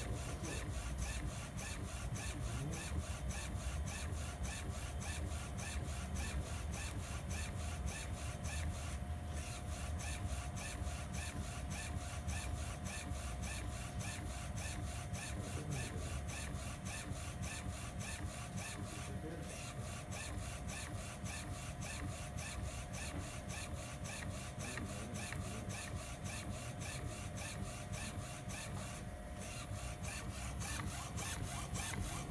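UV flatbed inkjet printer running a print pass: a steady mechanical hum with a fast, even pulsing, briefly breaking about every ten seconds.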